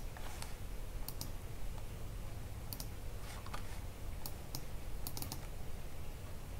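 Scattered clicks from a computer mouse and keyboard, some in quick pairs, with a quick run of several clicks near the end, over a steady low hum.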